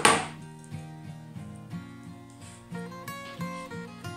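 A hot glue gun set down on a tabletop with one sharp knock right at the start, then background instrumental music carries on at a lower level.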